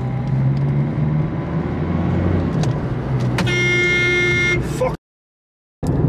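Steady low rumble of a car's engine and road noise heard from inside the cabin. About halfway through, a single held horn-like tone sounds for about a second. Near the end the sound cuts out to silence.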